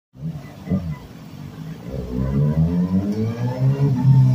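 Kawasaki ZX-6R inline-four sportbike engine running at low revs as the bike rides closer, growing steadily louder from about halfway through.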